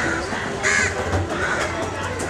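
Crows cawing over a steady low background rumble: a loud caw about two-thirds of a second in, and a weaker one a little after the midpoint.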